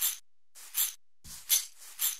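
Sliced percussion loop played back through the Punch 2 drum plugin's loop player: short, hissy, shaker-like hits about every three-quarters of a second, with a soft low thump about a second and a quarter in.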